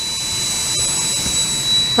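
Steady rushing noise of a running fan or blower-type motor, with a thin, high, steady whine over it.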